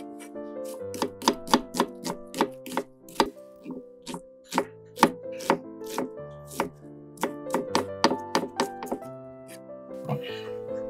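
Chef's knife chopping an onion on an end-grain wooden cutting board: a run of quick, irregular knife strikes on the board, over background music.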